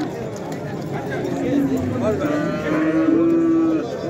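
A cow mooing: one long, steady low call lasting about a second and a half, starting about halfway through.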